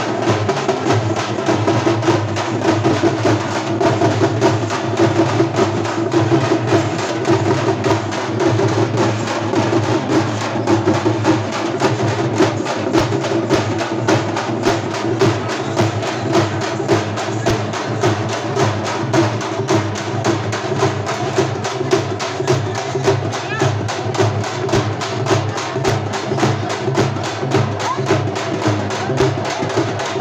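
Processional drums beaten with sticks, playing a fast, driving rhythm without a break, with crowd voices underneath.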